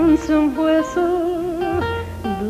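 Country music instrumental break: a held, wavering lead melody that slides between notes, over a bass line.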